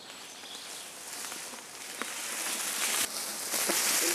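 Mountain bike tyres rolling through dry fallen leaves, a crisp rustle that grows steadily louder as the bikes approach and pass, with a few light clicks.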